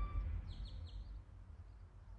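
Background music breaks off, leaving outdoor ambience with a low rumble and a few quick bird chirps about half a second in.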